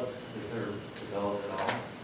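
Indistinct speech in a meeting room, with two light clicks, one about a second in and one near the end.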